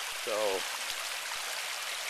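Small mountain runoff creek flowing shallow over rocks and gravel: a steady rush of running water.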